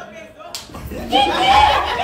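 A single sharp smack about half a second in, followed by a man calling out 'ouais' into a microphone.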